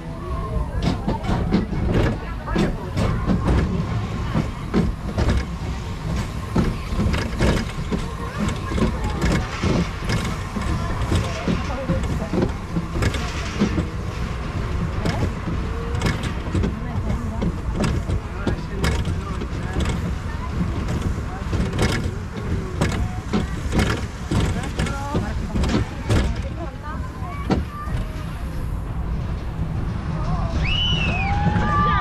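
Roller coaster mine-train car running along its steel track, with a steady low rumble and frequent clattering clicks and knocks from the train.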